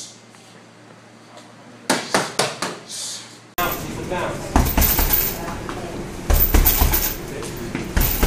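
Boxing gloves smacking hand-held punch pads, a quick run of sharp hits about two seconds in. Then gloved punches land on a hanging heavy bag, dull thuds in bursts.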